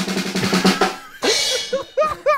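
Drum roll on a drum kit's snare, ending about a second in with a cymbal crash that rings and fades. A person's voice follows near the end.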